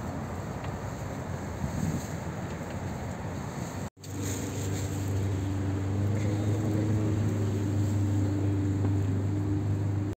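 River tour boat's engine running, with wind rushing over the microphone. After a brief dropout about four seconds in, a steady low engine drone holding one pitch comes through more strongly.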